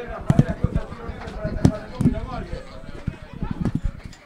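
Open-air ambience of a football pitch during a stoppage: distant voices of players and onlookers calling out, broken by scattered sharp knocks and thumps.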